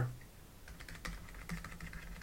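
Light, quick taps and clicks of a stylus on a drawing tablet as a dashed line is drawn stroke by stroke, beginning about half a second in.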